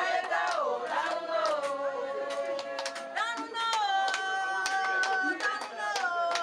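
A woman singing in long, held notes, the first phrase falling and then settling into steadier notes from about three seconds in, while hands clap a steady beat of about two to three claps a second.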